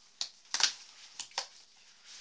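A Therm-a-Rest Z-Lite Sol closed-cell foam sleeping pad being pushed under an elastic cord on a backpack: a few short, sharp scuffs and rustles, the loudest about half a second in.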